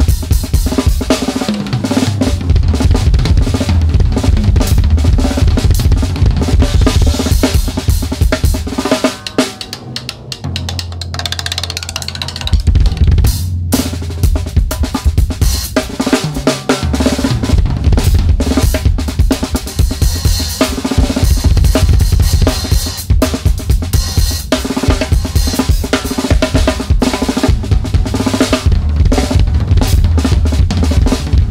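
Drum solo on a Sonor SQ2 drum kit: fast, dense bass drum and snare strokes. The playing thins out about ten seconds in, with a held low boom and a short break near thirteen seconds, before the full kit comes back.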